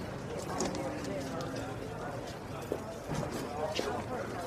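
People talking, with short sharp clicks and knocks scattered through the talk.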